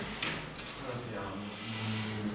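Low, indistinct speech from people in the room, with no clear words.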